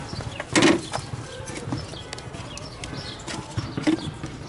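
Jump-starter clamps and cables being handled and clipped onto a car battery terminal: one loud clatter about half a second in, then scattered small clicks and rattles. Birds chirp faintly in the background.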